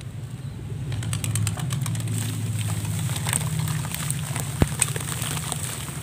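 Wet sand-cement mix crumbled by hand into foamy water in a plastic basin: gritty crackling and small splashes, with one sharp click a little past halfway. A steady low hum, like an idling engine, runs underneath.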